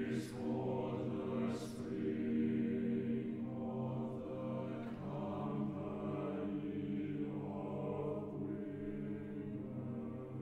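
Chamber choir singing sustained, chant-like chords, with a couple of hissed 's' sounds in the first two seconds.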